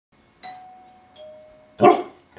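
A two-note ding-dong chime, a higher note then a lower one, each ringing and fading, followed near the end by a single loud dog bark.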